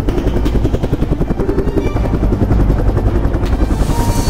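Loud outro soundtrack of a rapid, even low pulsing, about six beats a second.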